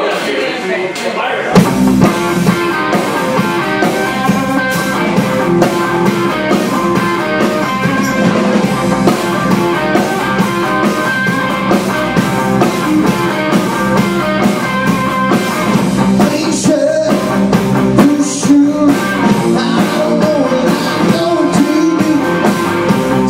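Live rock band playing: electric bass, electric guitar and drum kit come in together about a second and a half in and play on at full volume with a steady drum beat.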